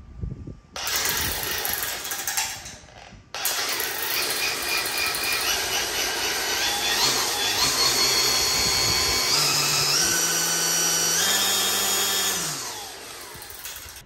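DeWalt 60V FlexVolt brushless string trimmer running without load. It gives a short burst that cuts off, then a longer run whose whine climbs in distinct steps as the variable-speed trigger is pulled further. Near the end the trigger is released and the head spins down.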